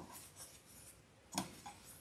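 Faint rustling of cotton quilt pieces being handled, with a short sharp snap about a second and a half in as a connecting thread is cut on a rotary-blade thread cutter.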